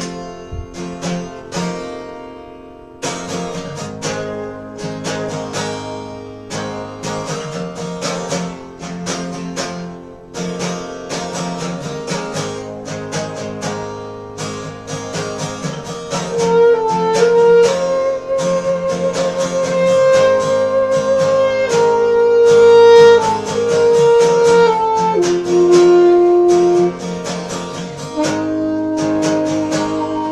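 Acoustic guitar strumming chords, joined about halfway through by a saxophone playing long held melody notes. The music grows louder once the saxophone comes in.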